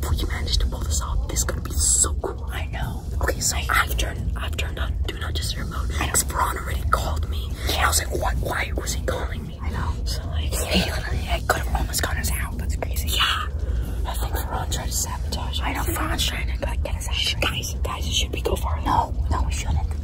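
Two boys whispering close to the microphone, with no voiced speech, over a steady low rumble.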